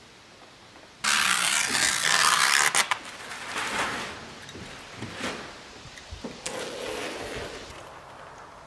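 Loud scraping and rustling that starts suddenly about a second in, then softer uneven scrapes and rubs, as a window unit is handled and slid against plastic house wrap.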